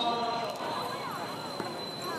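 Background voices of several people talking and calling, some rising and falling in pitch about half a second to a second in, over a steady thin high-pitched tone.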